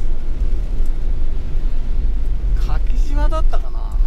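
Steady low rumble of a camper van driving on a wet road, its engine and tyre noise heard throughout, with a short voice-like sound about three seconds in.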